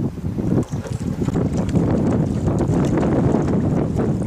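Gusty wind buffeting the camera microphone: a steady, uneven low rumble.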